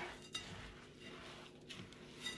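Faint stirring of a bird seed mixture with a spatula in a glass mixing bowl: a soft rustle of seed with a few light clicks against the bowl.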